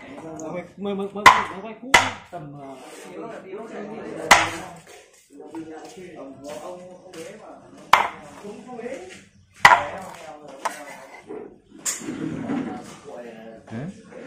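A cleaver chops steamed rats into pieces on a wooden chopping board. There are about seven sharp, irregularly spaced blows, a second or more apart.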